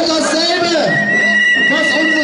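Voices at a street demonstration march, their pitch rising and falling in repeated arcs, with a steady high tone joining about a second in.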